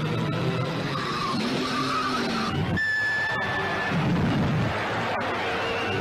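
Newsreel soundtrack of music mixed with the engine sound of two-litre sports racing cars, one passing with its pitch rising and falling about two seconds in; the sound changes abruptly near three seconds in, with a held high note.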